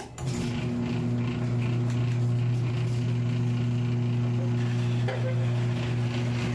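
Electric garage door opener starting with a click and running with a steady motor hum and light rattle as the sectional garage door rises.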